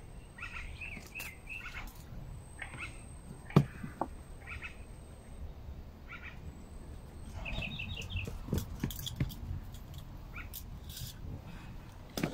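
Birds chirping in short scattered calls, with a quick run of chirps about two thirds of the way in. A single sharp knock about three and a half seconds in is the loudest sound, with light clicks and handling noises from a fishing hand-line yoyo being worked.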